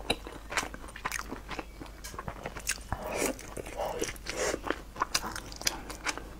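Close-up sound of a person chewing crispy fried food: a steady run of sharp, crisp crunches, with a few longer, softer mouth sounds around the middle.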